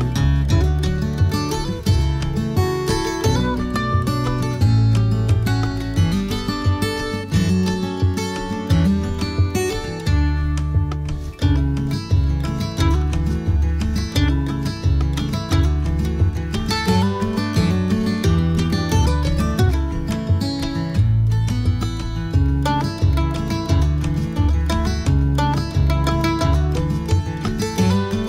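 Background music led by plucked guitar over a steady bass line.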